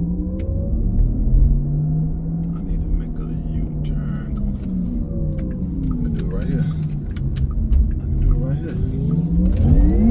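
Cabin drive sound of a 2020 Porsche Taycan Turbo on the move: a low pitched electric hum over road rumble that drops in pitch as the car slows in the middle, then rises again as it speeds up near the end.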